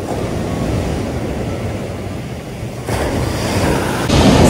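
Ocean surf breaking and washing up a sandy beach, with a louder wave crashing about three seconds in.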